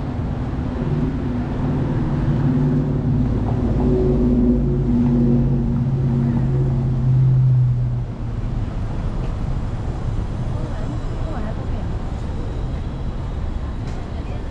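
Street traffic with a nearby motor vehicle's engine humming steadily and rising slightly in pitch, then cutting off suddenly about eight seconds in. After that, even traffic noise and passers-by remain.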